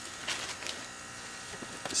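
Faint handling noise of a shop rag and a plastic parts bag: a few soft rustles in the first second, then low background.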